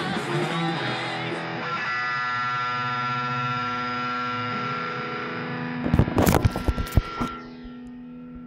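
Distorted electric guitar playing a last quick run, then one chord left ringing out. Near the end, a cluster of loud knocks and bumps as the recording device is handled, after which the ringing chord is much quieter.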